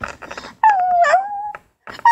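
A child's voice imitating a dog's whimper: one whine about a second long that dips and then rises in pitch. It comes after a few light taps of plastic toy figures on a table.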